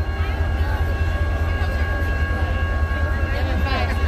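Diesel locomotive idling: a steady low rumble with a steady high whine over it, under crowd chatter.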